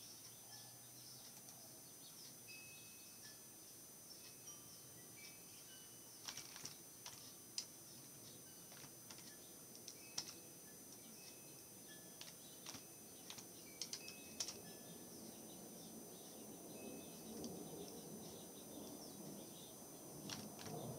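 Faint typing on a computer keyboard: scattered key clicks, mostly in the middle stretch, over quiet room noise.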